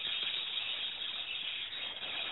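Steady high hiss of telephone-line noise, with no one speaking.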